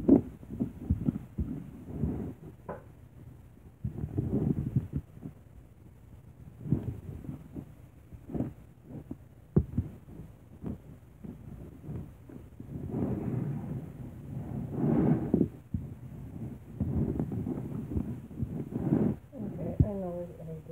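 Scattered sharp knocks and clatter of kitchen utensils and containers handled on a counter, with stretches of quiet muttering.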